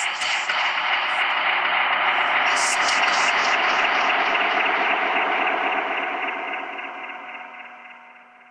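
Dense, sustained wash of tape-echo repeats, many held tones layered over one another, steady and then fading out over the last two seconds.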